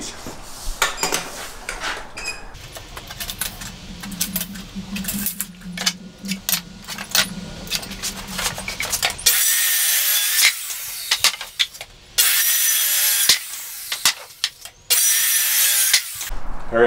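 Wooden boards knocking and clattering as they are handled. From about nine seconds in, a corded circular saw cuts through 2x6 lumber in three short, loud bursts.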